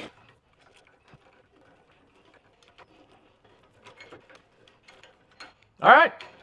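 Homemade steel bench vise being cranked open and closed by hand: a quiet, irregular patter of small metallic clicks and ticks from the drive screw and the sliding handle. The screw turns freely, which he calls so smooth. A brief vocal exclamation comes just before the end.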